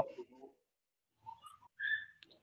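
A pause, mostly quiet, with a brief, faint, high whistle-like tone near the end.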